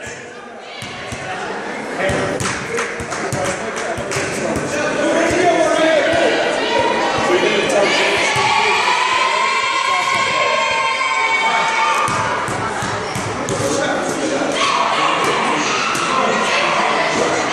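A basketball bouncing on a gym floor, repeated short thuds ringing in a large hall, over many overlapping voices chattering, loudest in the middle.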